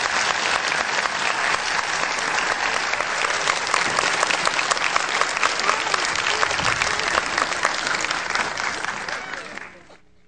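Large audience applauding a piano performance: dense, steady clapping that fades out near the end.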